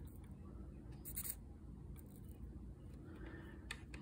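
Quiet room tone with a steady low hum, broken by faint short crackles about a second in and again near the end.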